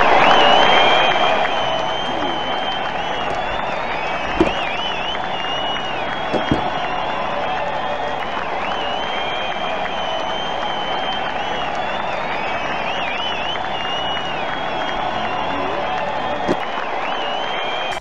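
A large crowd cheering and applauding, with shrill whistles rising and falling above it. It starts abruptly, is loudest in the first couple of seconds, then holds steady.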